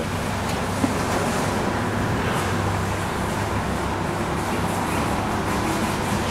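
Steady background rumble and hiss with a low hum, even throughout, with no distinct events.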